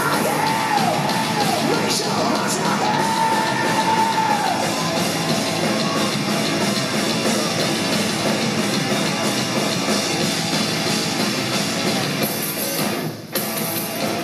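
Live rock band with electric guitar playing loud, heavy metal-style music, with yelled vocals over the first few seconds. Near the end the band breaks off briefly and then comes back in.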